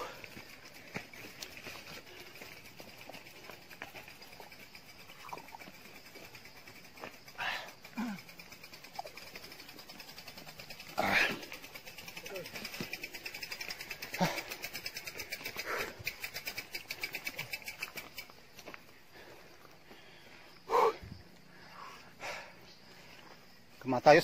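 Short distant shouts and voices of cyclists pushing mountain bikes uphill, over a steady high buzz, with a stretch of fast, even ticking in the middle.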